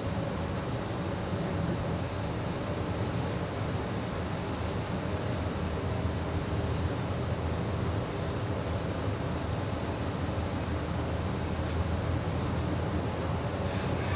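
Steady interior running noise of an H set (OSCAR) double-deck electric multiple unit under way between stations: a constant low rumble from the running gear on the track, with no breaks or sudden events.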